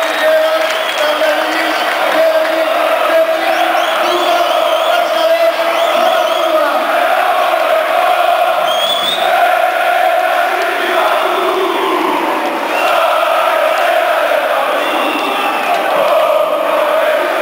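Big football-stadium crowd chanting and singing together in unison, a loud, steady mass of voices.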